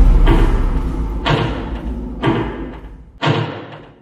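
Trailer sound design: four heavy thuds about a second apart over a low rumble, each dying away, the whole fading out near the end.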